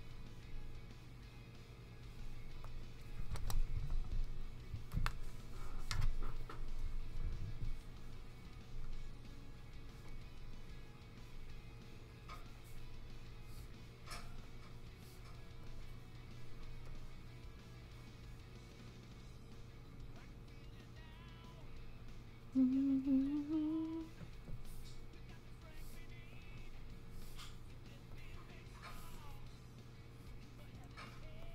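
Faint background music over a steady electrical hum. About three seconds in comes a low rumbling with a few sharp knocks that lasts several seconds. About two-thirds of the way through there is a short rising hummed note from a woman's voice.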